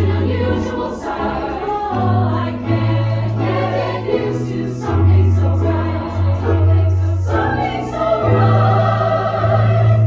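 Mixed choir singing in harmony, accompanied by a digital stage piano played through an amplifier, with held low bass notes that change every second or two.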